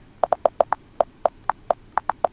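Computer keyboard keys clicking in a quick, uneven run of about ten keystrokes as a word is typed.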